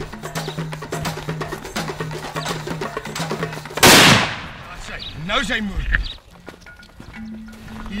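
A single shot from a side-by-side double rifle about four seconds in, loud and sudden with a short echo tail: a finishing shot into a downed Cape buffalo. Before the shot, background music with a steady low note and light ticking percussion.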